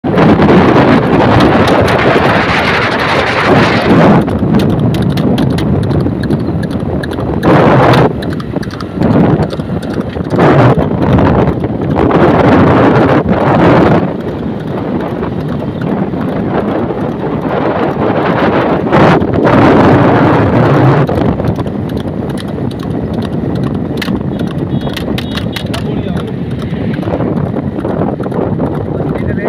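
A horse's hooves clip-clopping on asphalt as it pulls a wooden cart at speed, under loud wind buffeting the microphone of a vehicle running alongside.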